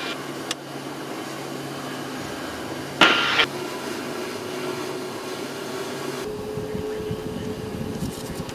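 Cockpit noise of a KC-135R's four CFM56 (F108) turbofan engines running, a steady hum. About three seconds in comes a short burst of noise, and from about six seconds in the sound turns to a deeper rumble with a steady tone.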